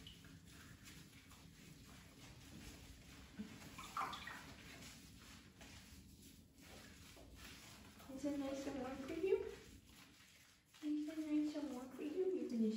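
Faint water in a bathtub as a beagle puppy is wet down and washed: a low trickling hiss with a few small splashes and knocks. A brief vocal sound comes about eight seconds in and again near the end.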